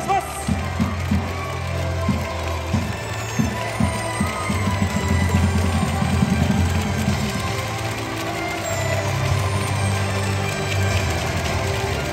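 Music played over a baseball stadium's public-address system at steady volume, with crowd noise from fans in the stands mixed in.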